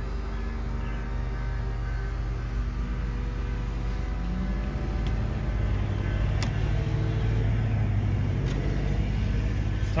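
Power soft top of a 2006 MINI Cooper S Convertible folding down: a steady motor whine over a low hum, with the motor note shifting about halfway through and a click about six and a half seconds in as the top stows. It works smoothly, with no functioning issues.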